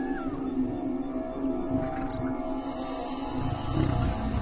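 A documentary music score with sustained tones, over which a lion gives a low growling roar near the end.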